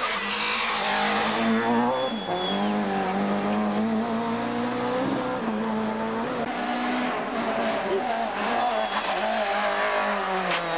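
Two-litre rally kit car engine at high revs as the car drives flat out along a tarmac stage. The pitch drops briefly at gear changes about two and five seconds in.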